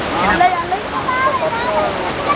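A steady rush of flowing water, with people's voices talking over it.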